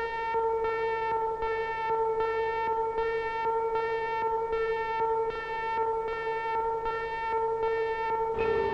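Launch-warning siren sound effect: one steady electronic tone whose upper overtones pulse on and off about one and a half times a second, signalling the launch sequence.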